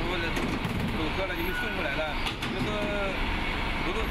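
A man speaking Mandarin over a steady low engine rumble from a vehicle running nearby.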